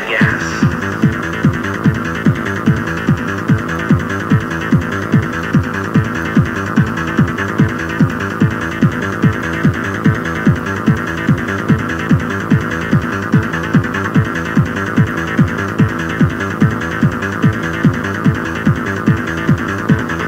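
Electronic dance music of the trance/techno kind, played back from a cassette recording of a club DJ mix: a steady four-on-the-floor kick drum at about two beats a second under sustained synth chords, with a short falling sweep right at the start.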